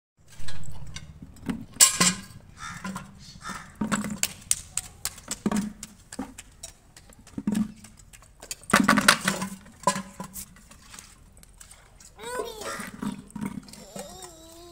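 A large plastic paint bucket knocking and scraping on a concrete floor as a toddler tips and drags it by its wire handle, in irregular bumps with a longer scraping stretch about halfway through. A short voice near the end.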